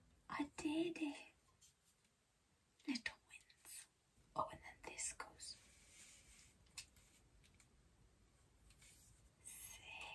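Soft muttering under the breath, in a few short bursts, with scattered sharp clicks of a plastic ring-light tripod stand being unfolded and adjusted by hand.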